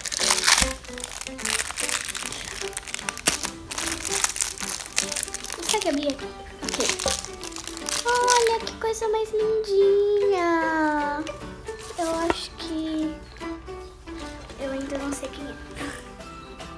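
Thin plastic wrapper of a toy surprise ball crinkling and crackling as it is torn open by hand and teeth, busiest in the first half.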